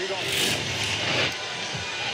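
Television replay-transition whoosh effect: a rush of hissing noise lasting about a second that fades away.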